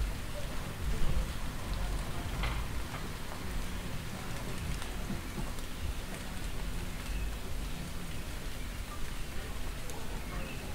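Street ambience of steady rain falling on surfaces: an even hiss over a low rumble, with a few small scattered ticks.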